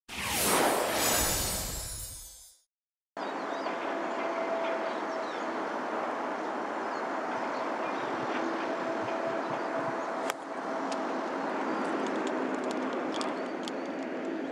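A loud whoosh from a broadcast transition graphic, sweeping down over about two seconds, then a short dropout. After that comes steady open-air golf course ambience, with a single sharp click about ten seconds in: a golf club striking the ball on a fairway approach shot.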